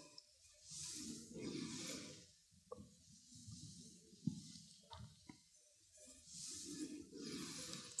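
Faint breathing from a woman exercising on a mat: two soft breaths near the start and two more near the end, with a few small taps and clicks in between.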